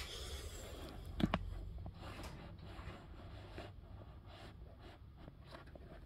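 A phone being handled close to its own microphone: a rustle at the start, two sharp knocks in quick succession a little over a second in, then faint scattered clicks and rustles.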